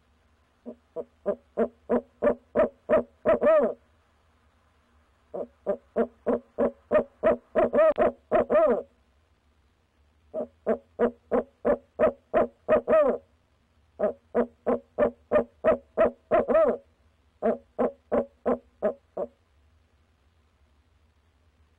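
Male barred owl hooting in five quick bouts. Each bout is a rapid run of about ten hoots, some four a second, growing louder and ending in a longer drawn-out hoot.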